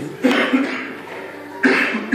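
A man laughing in two hoarse, cough-like bursts, one about a quarter second in and another near the end.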